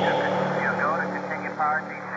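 Muffled, narrow-band voice sample that sounds like a radio transmission, over a steady low drone, within an atmospheric drum and bass track; the drums and high end drop out right at the start.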